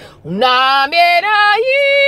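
A woman's unaccompanied voice singing wordless chant syllables. After a brief breath-pause it swoops up into a run of short stepped notes, then jumps up to a long held note near the end.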